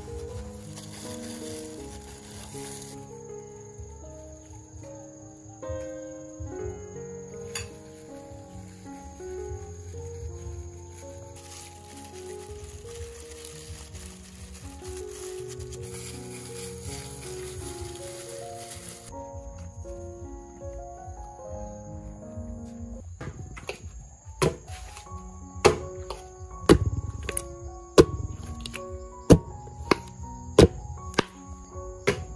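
Background music with a gentle melody throughout. In the last five or so seconds, a long pestle pounds sticky-rice dough in a stone mortar: about five heavy thuds, a little over a second apart.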